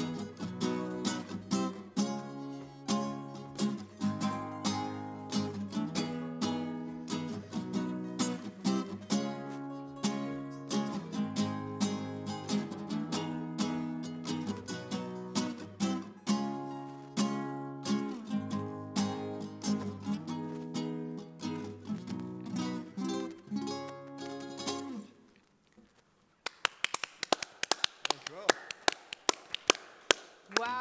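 Acoustic guitar strummed in a steady rhythm, played live, until the song ends about 25 seconds in. After a second of quiet, a handful of people clap.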